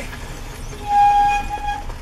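A horn sounds once: a single steady note held for about a second, over the low hum of a vehicle cabin.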